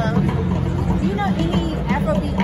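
People's voices over the steady low rumble of city street traffic.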